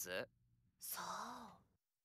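Faint voice from the anime's soundtrack: a quiet line ends right at the start, then about a second in a character gives a short breathy sigh.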